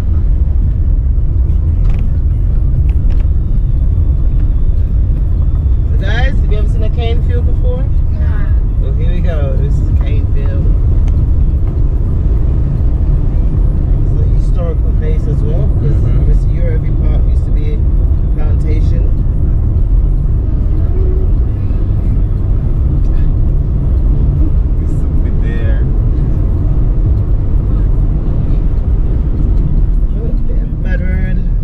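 Steady low rumble of a car driving along a rough country road, heard from inside the cabin. Faint voices come and go over it.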